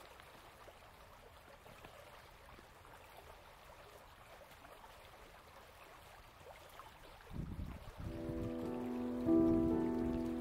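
Faint steady rush of a flowing creek. About seven seconds in comes a low rumble, and then background music with a sustained chord fades in and grows louder toward the end.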